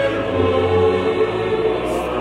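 Mixed choir singing long held chords with orchestral accompaniment, in a late-19th-century oratorio.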